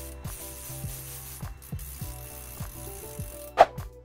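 Hand-cranked winch of a homemade drill stand's lifting mechanism clicking steadily, about three clicks a second, as it is cranked to raise the mast. A single louder knock comes near the end. Soft background music runs underneath.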